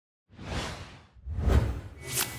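Two whoosh sound effects, one after the other. Each swells up and fades. The second is louder and deeper.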